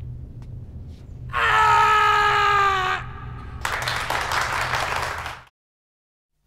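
Chewbacca's Wookiee roar, one long howling call that falls slightly in pitch, followed by a crowd applauding that cuts off suddenly.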